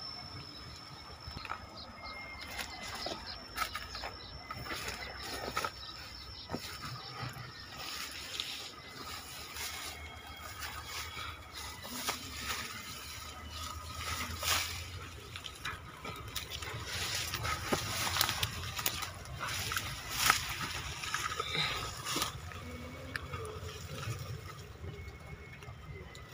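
Footsteps and rustling through dry grass, leaves and twigs while pushing through undergrowth, heard as irregular short crackles and snaps.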